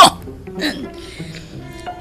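Soft background music with held, steady tones under a radio drama, with a few faint short vocal sounds in the first second.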